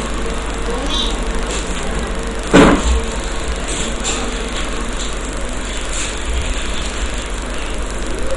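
Bitter gourd slices frying in hot oil in an aluminium kadai, stirred with a metal slotted spoon, with a steady sizzle. A brief loud sound comes about two and a half seconds in.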